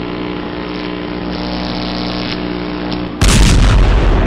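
Cinematic intro sound effect: a steady rumbling drone with sustained low tones, then a sudden loud explosion blast a little after three seconds in.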